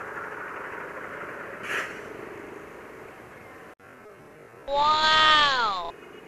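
Yamaha Mio i 125 scooter in traffic: steady engine and road noise. Near the end comes a loud, high call that slides down in pitch for about a second.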